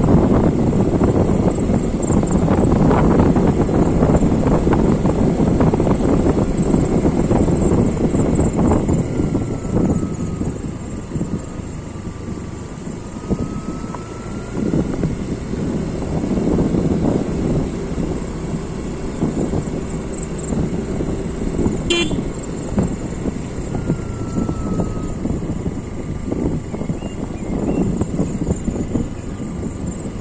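A road vehicle running along a road, a steady rumble of engine and tyre noise that is louder for the first few seconds and then eases. There is a single sharp click about two-thirds of the way through.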